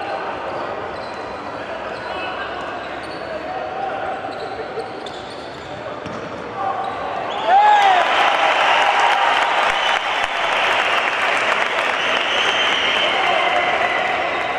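Basketball game sound on a hardwood court: arena crowd chatter, the ball dribbling, and a few short sneaker squeaks. About halfway through, the crowd noise swells and stays up for several seconds as a player drives to the basket.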